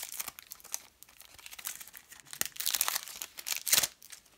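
Crinkling and rustling of a trading-card booster pack's foil wrapper and the cards inside being handled, in irregular bursts, loudest near the end.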